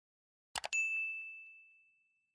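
Sound effect of two quick mouse clicks followed by a single bright bell ding that rings out and fades over about a second, a notification-bell chime.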